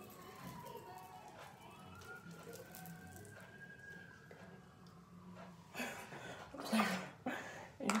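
A faint siren wailing, its pitch sliding slowly down and then back up. Near the end there are a few short, louder noises.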